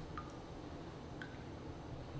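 Faint plinks of water drops falling onto a tank's surface, two of them about a second apart, over a low rumble.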